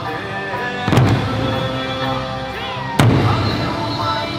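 Eisa troupe's large barrel drums (ōdaiko) struck together in unison: loud booming hits about two seconds apart, one about a second in and another near the end, over accompanying music.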